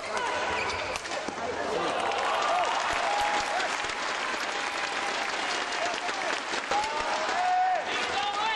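Arena crowd clapping and shouting after a point in a badminton match, with many voices calling out over continuous applause.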